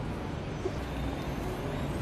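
Steady low rumble of city traffic, with no distinct events standing out.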